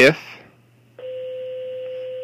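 A steady electronic tone, even in pitch and level, starts abruptly about a second in and holds without change.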